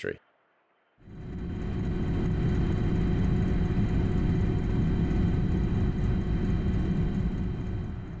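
Steady drone of an aircraft in flight heard from inside its cabin: a deep rumble with a faint constant whine above it, starting about a second in and building to full level over the next second.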